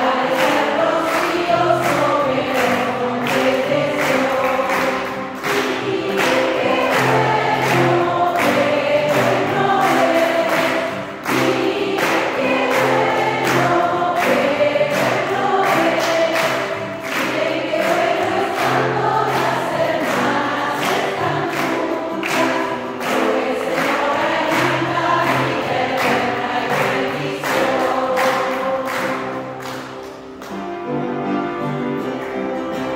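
A congregation of women singing a worship song together, led by a woman on a microphone, over music with a steady beat.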